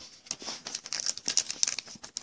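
Foil wrapper of a 2014-15 Panini Threads basketball card pack crinkling in quick crackles as it is picked up and handled for opening.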